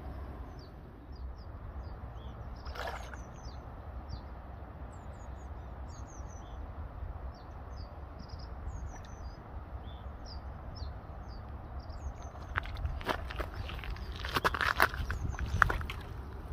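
Small birds chirping repeatedly over a low steady rumble. About three seconds in comes a single click, and in the last few seconds a run of rustles and knocks.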